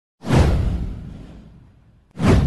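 A single whoosh sound effect with a deep low boom underneath, starting sharply and fading away over about a second and a half.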